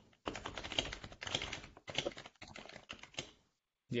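Steady run of keystrokes on a computer keyboard, stopping about half a second before the end.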